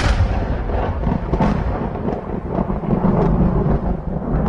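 Rumbling, thunder-like noise with deep bass in a rap track's intro production, its higher part slowly thinning out, with a few faint crackles.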